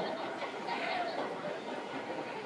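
Faint outdoor crowd ambience: distant chatter of passers-by, with a few brief, faint voices.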